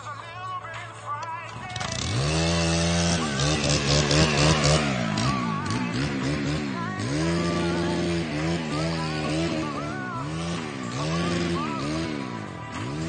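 Two-stroke gas string trimmer engine, quiet at first, then revved up hard about two seconds in and revved up and down over and over as it cuts into brush.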